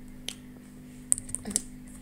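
A few keystrokes on a computer keyboard, spaced irregularly, most of them in the second half.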